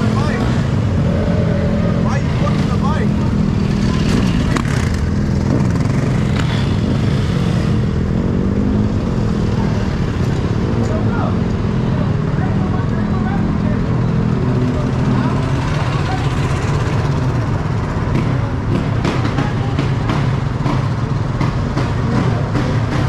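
Dirt bike engines idling steadily, with people's voices mixed in.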